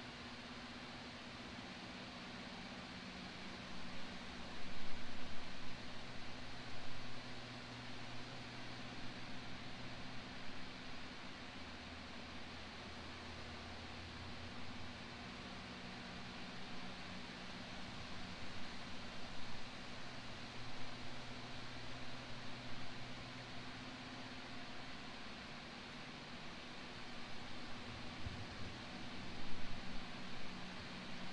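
Steady background hiss with a low hum and faint irregular swells of outdoor noise, the ambient sound of a silent prayer period with no voice or music.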